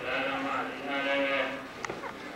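Voices chanting, drawn out on a steady, wavering pitch, with a short click near the end.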